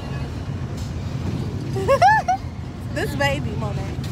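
Wind rushing over a phone microphone on a moving fairground ride, a steady low rumble. About two seconds in, a rider's voice cries out in a short high rising-and-falling call, the loudest sound, and another brief cry follows about a second later.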